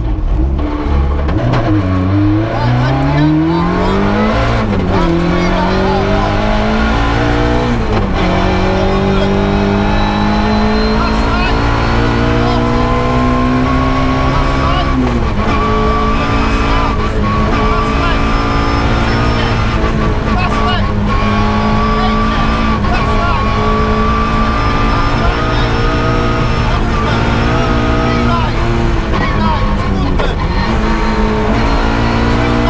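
In-car sound of a Ford Puma 1.6 rally car's four-cylinder engine driven hard. The revs dip as it slows through a chicane about two seconds in, then climb through the gears with three upshifts in the first fifteen seconds, and hold high before a short lift near the end.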